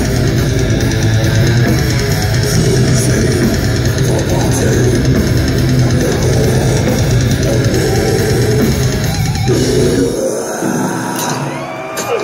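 Death metal band playing live at full volume: heavily distorted guitars, bass and drum kit in a dense wall of sound. The full band cuts off abruptly about ten seconds in, leaving a quieter wash of ringing and room noise.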